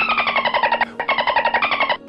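A fast-forwarded, chipmunk-like voice chattering out a string of digits in rapid pulses, each run sliding down in pitch, with a short break just before the one-second mark.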